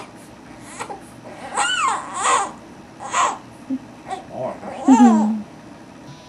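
Three-week-old baby fussing in about four short cries that rise and fall in pitch, the last and loudest near the end.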